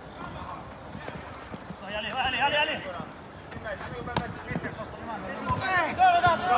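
Football kicked by players during a match: a sharp kick about four seconds in, with players shouting briefly a couple of seconds in.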